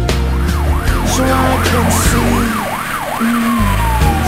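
Fire engine siren on a fast yelp, sweeping up and down about three times a second, then changing near the end to a slow falling wail. Music plays underneath.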